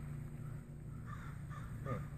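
A crow cawing a few times in the background, short harsh calls about a second in, over a steady low hum.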